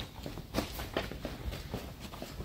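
Footsteps of a person walking briskly on a concrete garage floor: several short, irregular steps.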